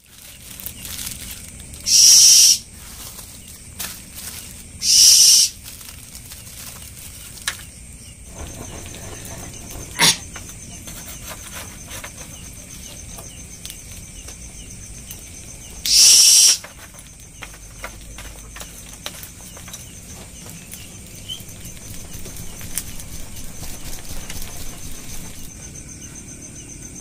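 A woven bamboo hand fan flapping over a charcoal grill to fan the coals into flame, with three loud, short whooshes and a sharp click. Crickets trill steadily underneath from about a third of the way in.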